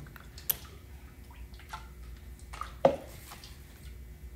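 Light knocks and small clicks from a plastic single-serve blender cup being handled at a kitchen sink, with a sharper knock about three seconds in.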